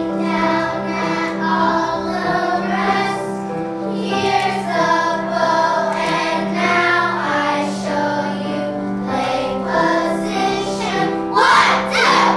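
A children's string ensemble performing, with young voices singing a melody in unison over a steady held low note. A louder burst comes just before the end.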